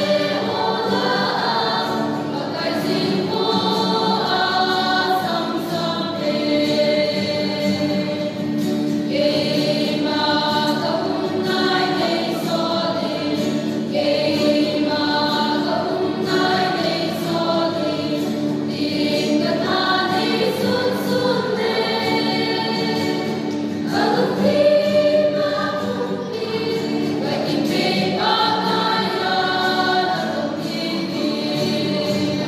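Mixed choir of young men and women singing a hymn in parts, with an acoustic guitar accompanying; the singing carries on without a break.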